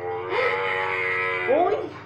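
A camel's call: one long, steady moaning note lasting about a second, followed near the end by a woman's startled "uy".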